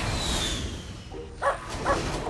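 Cartoon rocket-jet hiss with a falling whistle as a flying robot comes in to land, then two short dog-like yips from a robot pup near the end.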